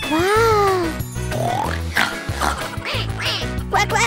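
Bouncy background music with a steady repeating bass line, overlaid with cartoon sound effects: a sliding tone that rises and falls over about the first second, a rising slide near the middle, and quick upward sweeps near the end.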